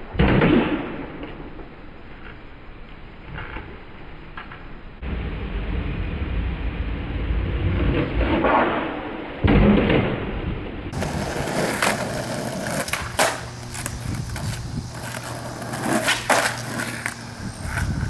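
Skateboard wheels rolling on a concrete driveway, with several sharp clacks of the board snapping off the ground and landing as frontside 180s are tried.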